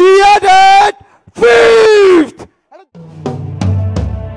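A man shouting into a microphone over a concert PA, two long drawn-out calls, the second falling away at its end. About three seconds in, a rock band starts playing, with sustained bass notes and drum hits.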